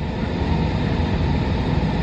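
Steady hum and rush of a car's air-conditioning fan blowing inside the cabin of the parked car.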